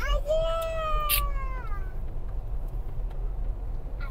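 A high voice draws out one long, wailing note for about a second and a half, then slides down in pitch at the end. The steady low rumble of a moving car runs underneath.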